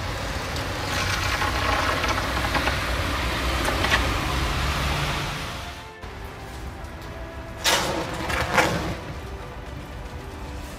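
Light rail trains' pantographs arcing on an ice-coated overhead contact wire: a steady noisy hum, then two loud, brief bursts near the end. The ice acts as an insulator between wire and pantograph, so the current jumps across in electric arcs.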